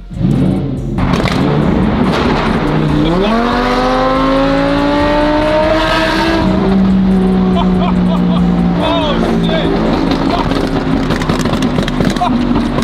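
Lamborghini Huracán V10 starting up with a sudden loud flare, then the engine note climbing steadily in pitch for a few seconds under acceleration before holding steady. Voices come in near the end.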